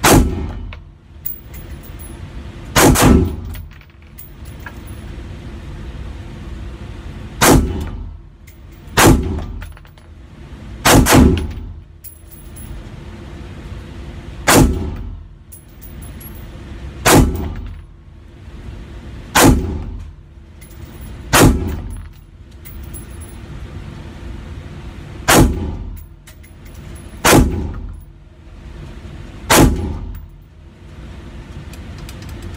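Gunshots from an AR-15 pistol with a 7½-inch barrel, fired one at a time at uneven gaps of one to four seconds, about fourteen in all, with twice a quick pair. Each shot is sharp and rings with echo off the range walls.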